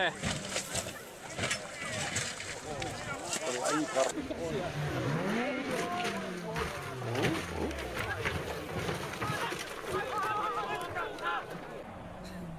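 Sound of rally crash footage: spectators' voices, with a rally car's engine and sharp knocks from the crash.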